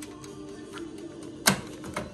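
Mechanical timer dial of a countertop toaster oven being turned by hand, ticking in quick faint clicks, with one sharp click about one and a half seconds in. Background music plays underneath.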